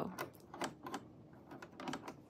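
Thumb screw of a Janome cover hem guide being turned tight, with the metal guide plate shifting on the coverstitch machine's bed: about half a dozen light, uneven clicks and taps.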